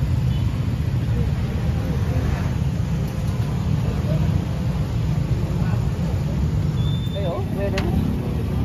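Steady low rumble of street traffic, with faint voices about seven seconds in.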